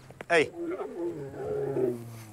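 A lion growling low for about a second and a half while biting at a person in rough play.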